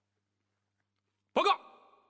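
Silence, then about a second and a half in, a man's voice calls out one short word, most likely the start of 报告 ('Report!'). The call fades away briefly afterwards.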